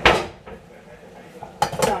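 Kitchen dishes and cutlery being handled: a sharp knock at the start, then two clinks near the end.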